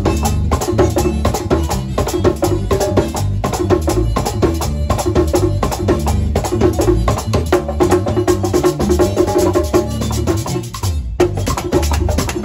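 Hand-played LP congas driving live band music: fast slaps and open tones over a moving bass line. There is a short break just before the end.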